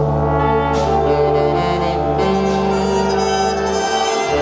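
Jazz big band playing sustained ensemble chords, with brass and saxophones sounding together over the rhythm section.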